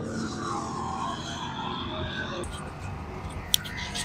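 Faint background voices over a steady low hum of pit-area noise. The background changes abruptly partway through, and a single sharp click comes near the end.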